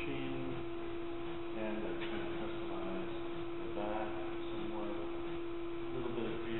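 A steady, single-pitched hum, with faint voices talking in the background at intervals.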